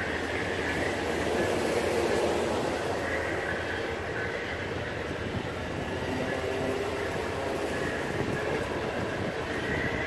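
Amtrak Superliner bilevel passenger cars rolling past on the rails: a steady rumble of wheels on track, with a faint high wheel squeal now and then.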